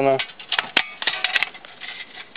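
Thin sheet-metal panels of a folding camp stove being handled: a few sharp light metallic clicks and clinks.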